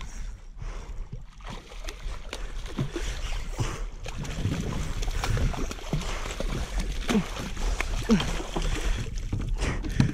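A hooked red drum thrashing and splashing at the surface beside a kayak as it is played in and landed: irregular water splashes and slaps, mixed with rod and gear handling noise. A few short vocal sounds come in between.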